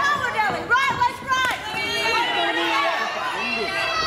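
Several spectators' voices shouting over one another at ringside, high and excited, with no single clear word.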